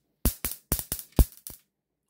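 Six or so sharp, unevenly spaced clicks and knocks from a screwdriver working in the plastic handle housing of an electric mosquito swatter bat.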